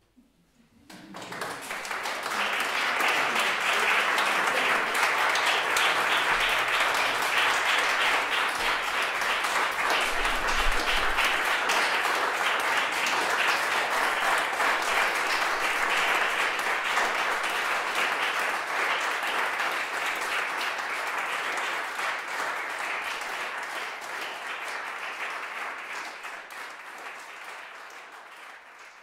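Audience applauding. It starts about a second in, builds over a couple of seconds, holds steady, and slowly thins toward the end.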